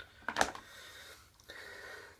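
Plastic golf discs being handled and shifted in the bag, with one sharp clack about half a second in and soft rustling after it.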